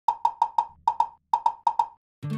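A quick run of about eleven short, sharp percussive knocks, all at the same pitch, in an uneven, skipping rhythm.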